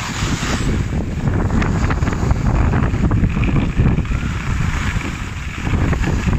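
Wind buffeting the microphone of a skier moving at speed down a groomed piste, a steady low rumble. In the first half second there is a brief high hiss of skis scraping across the snow.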